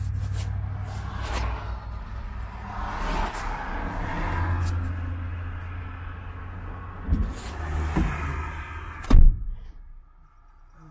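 Twin-turbo 427ci LSX V8 droning steadily as heard inside the car's cabin while it drives, growing louder and deeper for a couple of seconds midway. A few knocks near the end, the loudest a sharp thump about nine seconds in.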